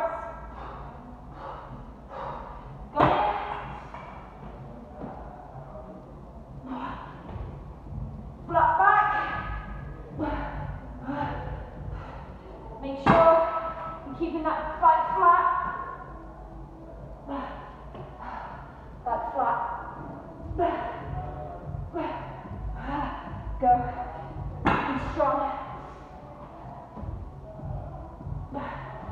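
Three heavy thuds about ten seconds apart as a plate-loaded barbell is set down and feet land on the floor during clean-and-press and jump-out push-up reps. A woman's voice is heard between them.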